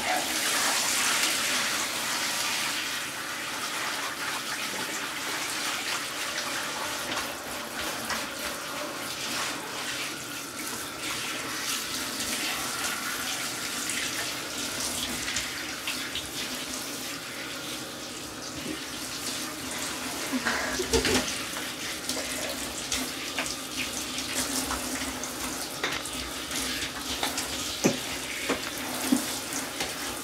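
Handheld shower head spraying water steadily over a cat and onto a plastic shower tray, rinsing off shampoo. A few brief knocks come in the last third.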